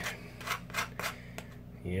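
A knife scraping Vegemite across toasted sourdough rye bread in several short strokes.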